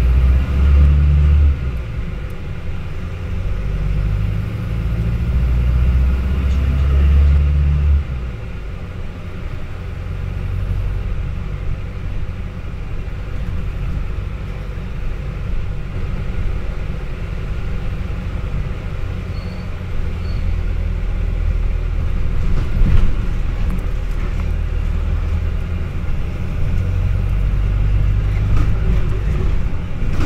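Volvo B5LH hybrid double-decker bus on the move, heard from inside the passenger cabin: a low engine and road rumble that is heaviest for the first eight seconds, then eases and runs on steadily.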